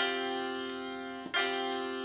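A chord played on a tablet's piano app, struck and held, then struck again with the same notes a little over a second in. It is an unresolved chord, the kind left hanging near the end of a song.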